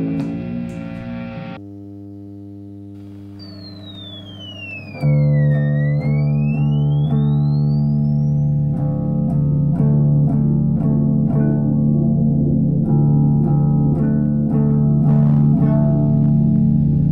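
Sludge-metal music: a quiet sustained drone, then a tone that sweeps down and back up while heavily distorted guitar and bass crash in loud about five seconds in and play on in slow, sustained riffing.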